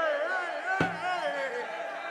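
Several voices of a congregation raised together in praise, overlapping and rising and falling in pitch, with a single thump about a second in.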